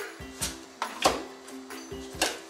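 Kitchen knife slicing kabocha pumpkin skin into thin strips, knocking on a wooden cutting board several times, the loudest stroke about a second in, over background music.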